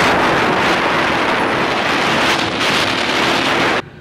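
Wind rushing hard over the camera microphone on a fast-moving motorbike, with the engine faintly underneath; it cuts off suddenly near the end.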